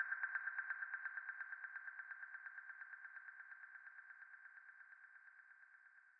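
Closing synth line of an electronic trance track: a single mid-pitched tone pulsing rapidly and evenly, fading out steadily to silence as the track ends.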